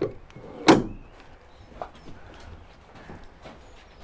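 Roller coaster lap-bar restraint being pushed down and latched: one loud metallic clunk about three-quarters of a second in, followed by a few light clicks.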